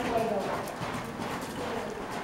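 Horse's hoofbeats on the soft sand footing of a covered riding arena as it moves off under the rider.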